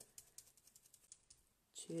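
Faint, quick light taps over the first second or so, then near silence: excess acrylic paint being dabbed off onto a plastic sheet and scrap paper.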